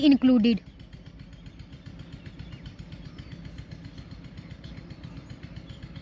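A small engine idling steadily in the background, a low running sound with a fast, even pulse, after a spoken word ends in the first half-second.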